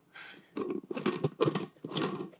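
Screw-on lid of a wide-mouth fermenter being twisted onto the jar, the threads and seal rubbing and scraping in several short strokes as it is turned down.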